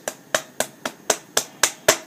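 Hands working a cream-to-foam facial cleanser into lather, the wet palms smacking together about four times a second in an even rhythm of eight sharp slaps.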